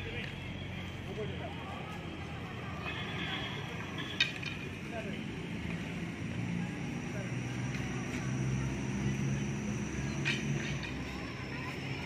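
Rattan arnis stick giving a single sharp wooden clack about four seconds in, with a softer knock near ten seconds, over a steady outdoor background with a low hum.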